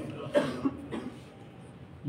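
A man's brief cough into a close microphone about half a second in, followed by a smaller catch of the throat.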